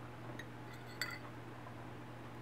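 A metal utensil clinking against cookware: a couple of light ticks, then one sharper ringing clink about a second in, over a steady low hum.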